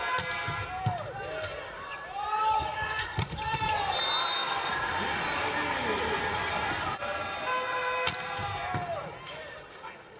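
Indoor volleyball arena: sharp ball hits and squeaking court shoes over a loud crowd cheering. The noise fades near the end.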